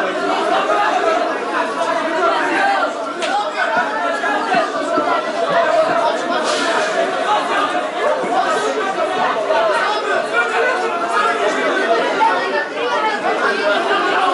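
Crowd chatter: many voices talking over one another at once, steady, with no single speaker standing out.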